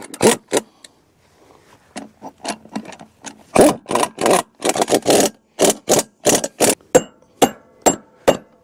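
Irregular metal clanks and knocks as a steel wheel hub with spacers is worked onto a hay rake's axle. The knocks come thicker from about three and a half seconds in, and the last few ring briefly.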